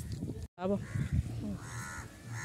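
A bird calling twice in the background, each call about half a second long, after a short snatch of a voice.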